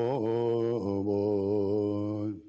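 A man chanting a Buddhist prayer in a deep voice, with long held notes and brief breaks between phrases.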